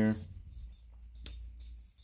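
Faint clicks and rustling as a small plastic plant pot is picked up off a wire shelf, over a steady low hum.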